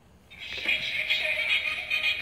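A musical greeting card's sound chip playing a song through its small speaker as the card is opened. The song starts about a third of a second in and sounds thin and treble-heavy.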